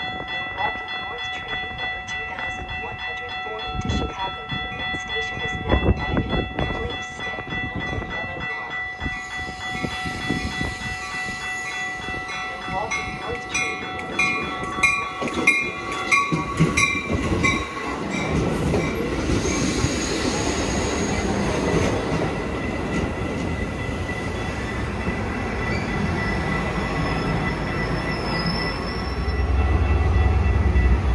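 Metra bilevel commuter train arriving at a station. Steady ringing warning tones, typical of grade-crossing bells, stop about halfway through; the wheels click quickly over rail joints as the cab car comes in, then the cars roll past with a rising rush and brief high brake squeals as the train slows.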